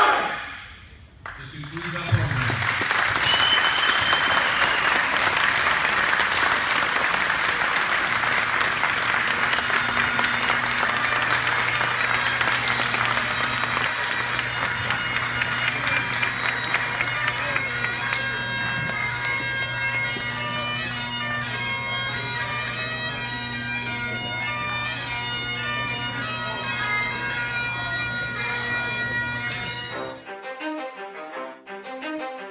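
A group shout cuts off at the start, and then applause and cheering fill the hall. About eight seconds in, bagpipes start playing: a steady drone under the melody, which carries on as the applause thins.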